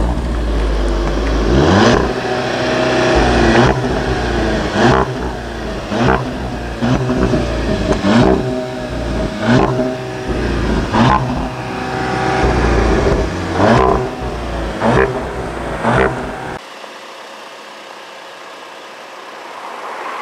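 Seat Leon Cupra's 2.0-litre turbocharged four-cylinder engine revved hard at standstill: about a dozen throttle blips in quick succession, each rising and dropping back, with a sharp crack at many of the peaks. The revving stops abruptly about three-quarters of the way through, leaving quieter background.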